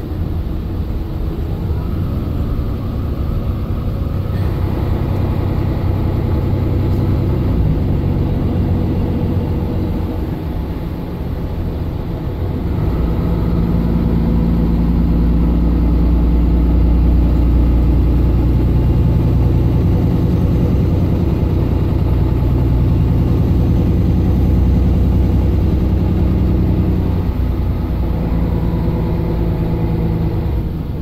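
Mercedes-Benz Citaro O530 LE bus's 12-litre OM457hLA inline-six diesel heard from inside the passenger cabin, pulling under load through its ZF Ecolife automatic gearbox. It eases off about ten seconds in, then pulls louder and harder from about thirteen seconds in.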